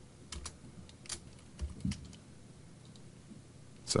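A few separate keystrokes on a computer keyboard in the first two seconds, then quiet typing pauses.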